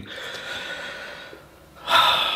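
A man drawing a long, audible breath in through his open mouth for about a second and a half, then a short, louder breath near the end.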